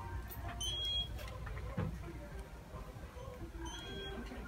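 Faint background music playing in a retail store over a low, steady rumble of the shop, with a short high beep just before one second in.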